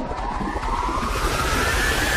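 Cartoon sound effect: a whistling tone that glides steadily upward in pitch over a swelling rushing noise, leading into a rainstorm.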